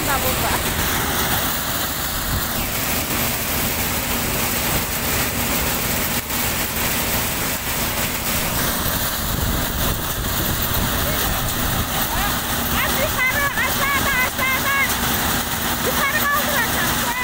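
Stationary chickpea threshing machine running at work as plants are fed in: a loud, steady mechanical noise that doesn't let up.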